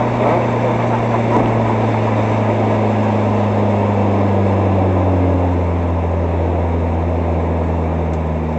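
Mazda Miata race car's four-cylinder engine heard from inside the car, its note falling slowly and steadily as the car slows from about 60 to 40 mph, over loud wind and road noise.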